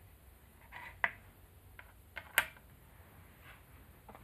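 Wooden shogi pieces clicking as they are set down on a wooden shogi board: a few light clicks, the sharpest about a second in and another near the middle.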